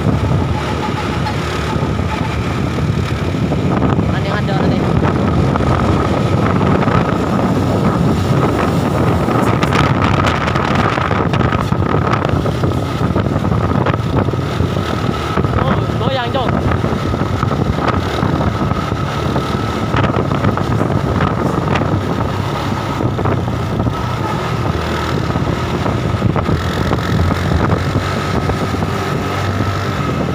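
Continuous road noise from moving vehicles: engine drone and tyre noise with wind buffeting the microphone, and a thin steady whine running through it.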